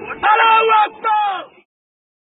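A man shouting "Allahu Akbar": two loud, drawn-out phrases that cut off suddenly a little past halfway.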